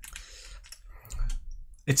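A few soft, scattered clicks in a quiet pause, with a brief low bump about a second in.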